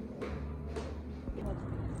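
Footsteps: three steps roughly half a second apart over a steady low rumble.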